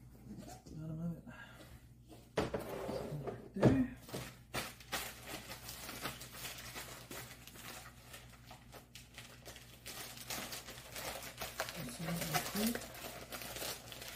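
Plastic packaging film crinkling and rustling as it is handled and pulled off, running on from about four seconds in. Just before that comes a single loud thump as something is set down.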